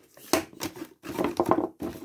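A cardboard cutout being handled and shifted against a wooden counter: a few sharp knocks and scrapes, the loudest about a third of a second in.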